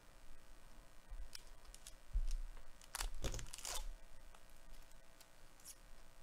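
Baseball trading cards being handled and flipped through by gloved hands: scattered soft rustles, flicks and scrapes of card stock, with a low bump just after two seconds and a busier cluster around three seconds in.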